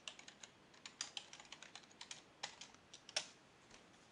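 Typing on a computer keyboard: a faint run of irregularly spaced key clicks.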